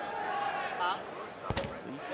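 A basketball bounced once on a hardwood court about one and a half seconds in, a sharp single thud over faint arena murmur.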